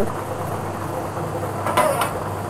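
Lottery ball draw machine running: a steady low hum with the balls rattling inside the clear drum, and one short sharp click near the end.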